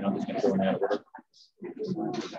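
Indistinct voices talking: people speaking in the background of a video-call meeting. Words are not clear enough to make out.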